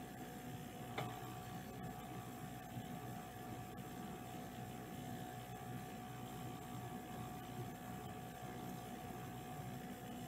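Quiet room tone with a steady low electrical hum, and a faint click about a second in.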